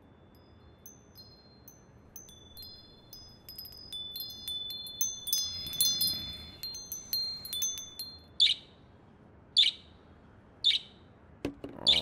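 Delicate high chime tones struck one after another and ringing on, overlapping like wind chimes. From about eight seconds in they give way to short, sharp chirps repeating about once a second.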